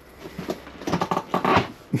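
Rustling and crackling of piled trash and debris, a few short scattered bursts in the second half, in a small enclosed room.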